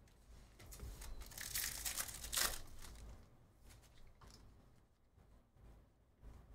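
2023 Topps Stadium Club baseball cards shuffled through in the hand: the cards sliding and rustling against each other, loudest about one to two and a half seconds in, then fainter.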